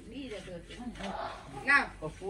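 Background voices talking, with a loud high-pitched shout or cry about 1.7 seconds in.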